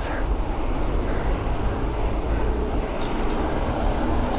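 Steady low rush of wind buffeting the microphone of a camera mounted on a bicycle that is moving at speed.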